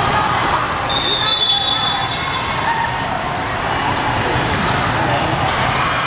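Busy hall din at a volleyball tournament: balls bouncing on the hardwood courts and many voices talking, with a high steady tone lasting about a second, about a second in.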